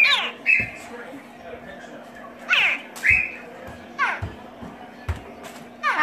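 Baby crocodile giving short, high chirping calls that fall steeply in pitch, about five of them a second or so apart, with a few dull low thumps in between.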